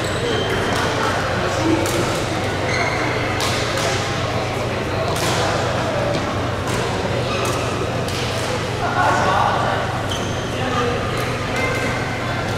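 Badminton rackets striking shuttlecocks in a large, echoing hall: sharp hits come irregularly every second or two from this and neighbouring courts, with short high squeaks from shoes on the court floor. Players' voices are heard in the background over a steady low hum.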